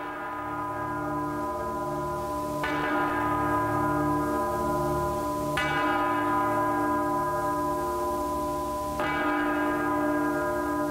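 Bell tones in title music: a deep, bell-like chime struck four times, about every three seconds, each ringing on over a sustained low drone.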